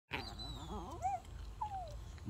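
Chihuahua whining and grumbling in a wavering voice, with a short rising-and-falling yelp about a second in and a falling whine near the end: the eager whining of a small dog that wants to be let down to climb a tree.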